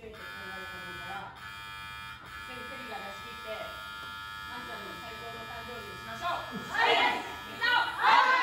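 A steady electrical buzz with many even overtones under a faint talking voice, then, near the end, a group of women's voices calling out loudly together, the loudest thing here, as the team bows in a huddle.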